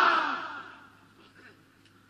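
A loud voice over a public-address system dies away in its echo within the first second. A quiet pause follows, with a faint steady hum.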